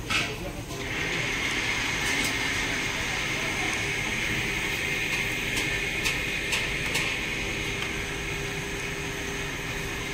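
A steady machine-like drone with a high hiss sets in about a second in and holds steady, with a few light clicks and knocks over it.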